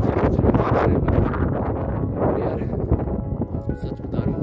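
Wind buffeting the microphone with a heavy low rumble, and background music coming through, clearest near the end.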